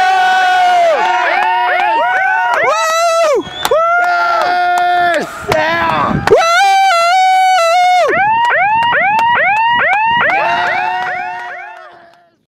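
A loud horn sounding, with long held blasts broken up by runs of short toots, about three a second, each dipping in pitch as it starts and stops. It fades out at the end.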